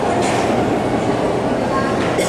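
Steady hubbub of many indistinct voices over a continuous low rumble of background noise in a busy indoor public space.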